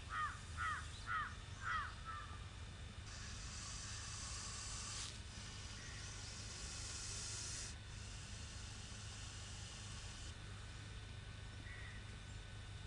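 A bird calling four times in quick succession, about half a second apart, right at the start, followed by a steady high hiss lasting a few seconds in the middle that starts and stops abruptly.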